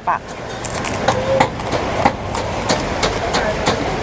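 Crunching and chewing of a crispy grilled duck bill, with irregular crackly clicks, over the steady chatter of a busy market crowd.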